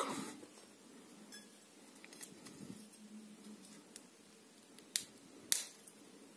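A few small sharp clicks and taps from handling a cracked walnut shell and a table knife, the loudest two close together about five seconds in, over quiet room tone.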